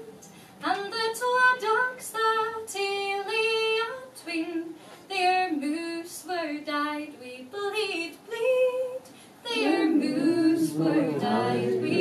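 Unaccompanied female voice singing a traditional Scottish ballad in held, ornamented notes. Near the end, lower voices join in.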